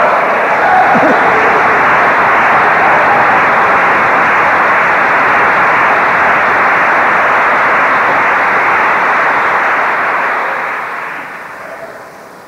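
Audience applauding in a lecture hall, a dense steady sound that dies away near the end.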